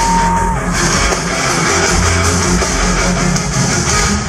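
A live pop-rock band plays loudly in an arena: a full band sound with heavy bass, recorded from the audience on a compact camera's microphone.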